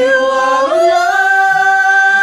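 Karaoke singing into a microphone: the voice rises to a long held note about two-thirds of a second in and holds it.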